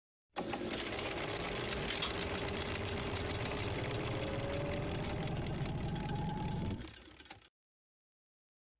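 A steady mechanical whirring clatter under a faint, slowly rising tone, used as the logo's sound effect. It starts just after the opening and fades out about seven seconds in.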